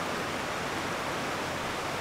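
A steady, even hiss with no distinct events.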